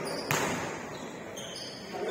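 A basketball hitting a hardwood gym floor once, a sharp bounce about a third of a second in that rings on in the large hall.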